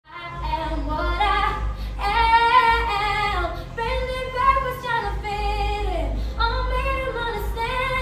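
A woman singing solo into a microphone, in long held notes, several of them gliding down in pitch (about six seconds in).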